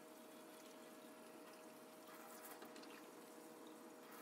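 Faint, steady running water from a tap falling onto gloved hands in a stainless-steel surgical scrub sink, with a faint steady hum beneath it.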